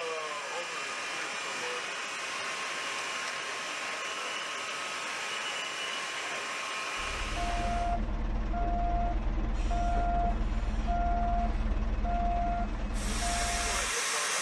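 A steady hiss, then about halfway through a heavy transporter vehicle's engine starts to rumble low and its reversing alarm beeps six times, a little over a second apart.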